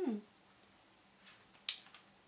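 A woman's soft 'hmm' at the start, then near the end a single short, sharp click as she finishes applying lip balm.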